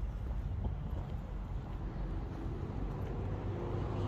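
Steady low rumble of outdoor background noise: wind on the microphone mixed with road traffic.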